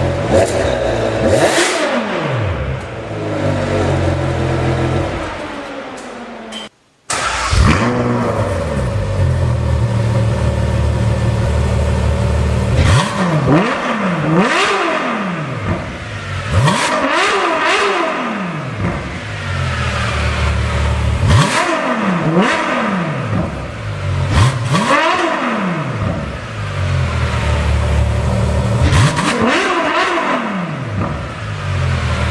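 Ferrari V12 engines free-revving at standstill. First a Ferrari 599 GTO's V12 is blipped and its pitch falls back slowly, then it cuts out briefly about seven seconds in. After that a Ferrari F12tdf's V12 is revved again and again in sharp blips that rise and drop, about eight times.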